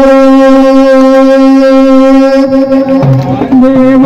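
A woman singing into a microphone over loudspeakers, holding one long, steady note that breaks off about two and a half seconds in. A lower man's voice takes over near the end.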